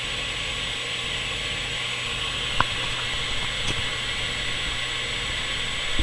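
Steady hiss over a low hum, with a single sharp click about two and a half seconds in.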